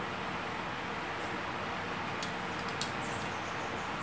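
Steady background hum and hiss, with two faint clicks a little over two and nearly three seconds in, from the extended telescoping tripod pole being handled.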